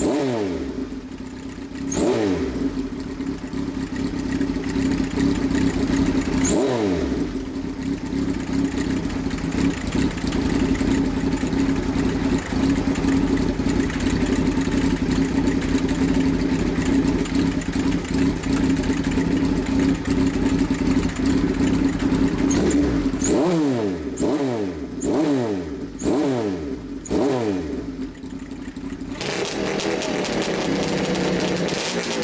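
Kawasaki Z1A 900's air-cooled inline-four engine running just after starting, its throttle blipped: the revs rise and fall back a few times early on, settle into a steady idle, then about six quick blips come in a row in the last several seconds.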